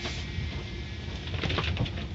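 Automatic car wash equipment running with a steady low rumble, with a few knocks or slaps at the start and again around the middle to late part.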